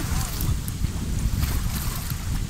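Small lake waves washing over and between shoreline rocks, with wind rumbling on the microphone.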